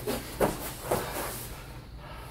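Grapplers scuffling on foam mats: gi fabric rustling and bodies shifting, with two sharp thumps about half a second and one second in as they go down to the mat.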